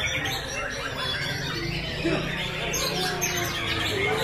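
White-rumped shamas (murai batu) singing in competition, several birds at once in rapid, varied phrases of quick sweeping notes, over a murmur of crowd voices.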